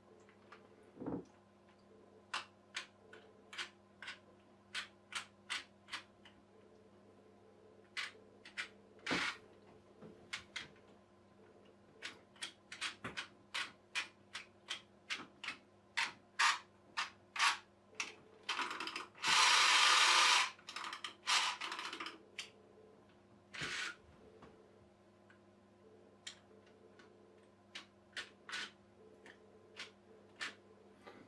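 Wind-up key of a toy clockwork boat's outboard motor being turned, the winding ratchet clicking roughly twice a second. A loud burst of whirring noise lasting about two seconds comes a little past the middle, as the clockwork motor runs.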